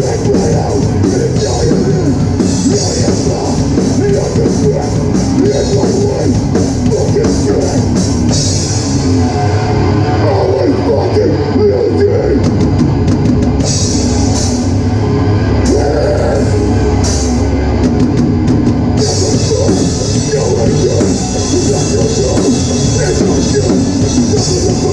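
Hardcore punk band playing live and loud: distorted guitars, bass and a pounding drum kit. The cymbals drop out for much of the middle stretch, with a few single crashes, then come back in full near the end.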